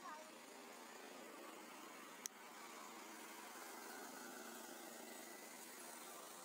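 Faint steady background hiss, near silence, broken by a single sharp click about two seconds in.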